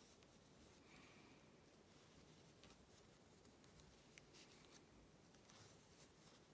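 Near silence: faint rustle of yarn and a few light clicks of wooden knitting needles as stitches are knitted.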